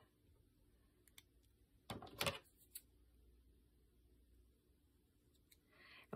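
Near silence, with a brief cluster of small clicks and rustling about two seconds in: paper pieces and craft tools being handled on a cutting mat.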